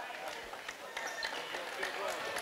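Faint basketball-gym background during a stoppage: distant crowd voices and scattered light footsteps of players on the hardwood court.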